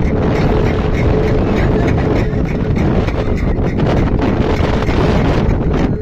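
Wind buffeting the microphone: a loud, dense rumble with no break. Faint regular ticks and a thin steady tone sit under it in the first half.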